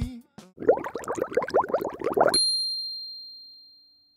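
Distributor's audio logo sting: a quick run of short rising sweeps, then a bright ding about two and a half seconds in that rings on and fades away.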